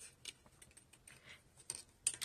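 Scissors snipping through a strip of patterned paper: a few faint, short snips with a soft paper rustle between them.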